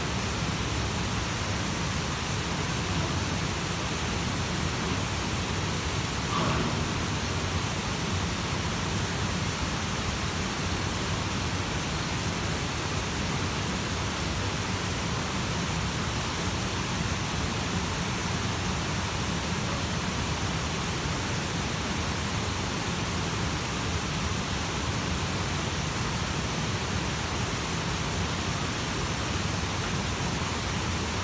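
Steady, even rush of flowing water, unchanging throughout.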